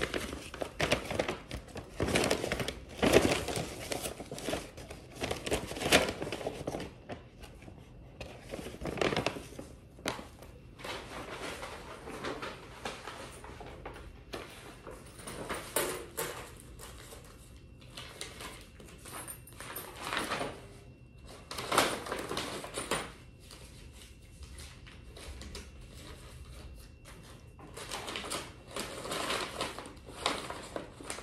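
Irregular rustling and handling noises as things are moved about at a desk, with a few louder knocks.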